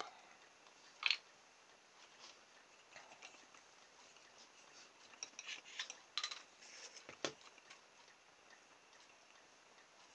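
Faint, scattered light clicks and taps of small plastic parts being handled and set down on a cutting mat, with one sharper click about a second in and a cluster of taps between about five and seven seconds.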